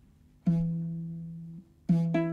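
Nyatiti, the Kenyan lyre, plucked: one low note about half a second in rings and fades for about a second before it is stopped, and a second note is plucked near the end as the song begins.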